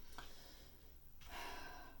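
A faint breath: a quiet intake of air in the second half, with near silence before it.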